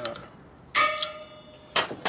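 Two sharp metallic clinks about a second apart, the first ringing briefly: a steel hand tool knocking against the metal clutch hub of a motorcycle.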